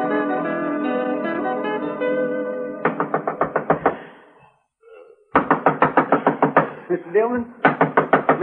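An orchestral music bridge ends about three seconds in. Then a radio-drama sound effect of rapid pounding knocks on a wooden door, a short pause, and a second, longer run of insistent knocking. A man's voice is calling out near the end.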